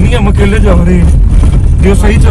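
Steady low rumble of a Toyota Yaris's engine and tyres heard from inside the cabin while driving, under a man's voice.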